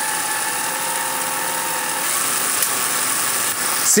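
Home-built Van de Graaff generator running: its electric motor drives the belt, which carries copper plates, over the rollers with a steady mechanical whir and rattle.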